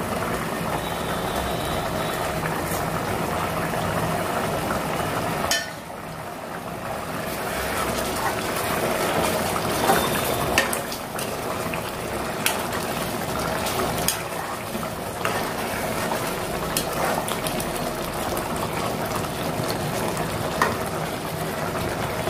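Mutton gravy bubbling at a steady boil in a pressure cooker pot while a perforated metal ladle stirs it, with a few light clicks as the ladle touches the pot.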